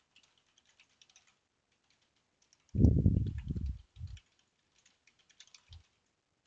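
Fast, light keystrokes on a computer keyboard as a search query is typed. A louder, low rumble lasting about a second comes in about three seconds in, with two brief low thumps after it.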